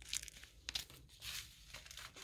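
Faint crinkling of small plastic fertiliser sachets handled in the hand: about four short rustles.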